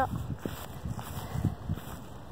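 Low rumble of wind on the microphone, with light rustling and a few soft knocks.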